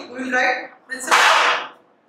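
A man's voice close to a clip-on microphone: a short untranscribed vocal sound, then about a second in a loud breathy hiss lasting under a second.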